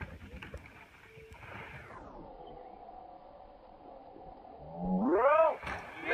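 Faint outdoor background for most of it, then about five seconds in a drawn-out shout from a person, rising and then falling in pitch, like a cheer.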